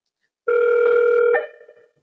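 A single steady electronic beep tone from intercom equipment. It starts about half a second in, holds for just under a second, then shifts slightly and fades away.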